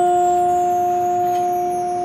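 Community concert band holding one sustained note in octaves, steady throughout, with a faint high ringing shimmer above it.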